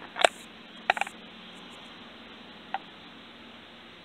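Knife being put away into its hard plastic sheath: two sharp clicks within the first second, then a single faint tick near three seconds.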